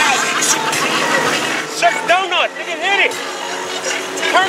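Passengers shrieking and laughing aboard a fast-moving motorboat, over a steady engine drone and the rush of spray. Two rising-and-falling yells come about two and three seconds in.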